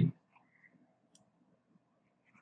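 Near silence with a few faint, sharp clicks, the clearest about a second in.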